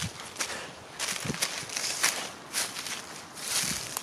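Footsteps through dry fallen leaves and dead grass, with the rustle of stems brushed aside, in an uneven run of steps.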